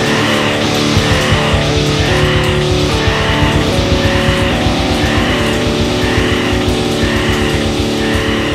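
Stoner rock band playing: heavily distorted electric guitar and bass, with a fast pulsing low rhythm from about a second in.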